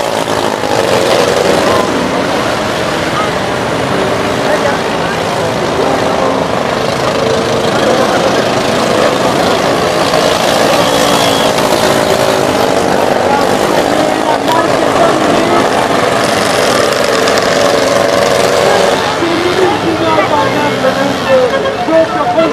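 Engines of several small stock cars running together on a dirt track, a dense mix of overlapping engine notes rising and falling as the cars accelerate and slow through the turns.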